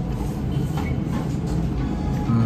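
A steady low rumble of background room noise, with a few faint soft clicks.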